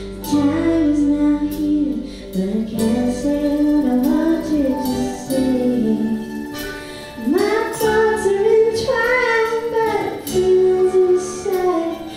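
A woman singing lead in a slow song while she plays mandolin, backed by a live band.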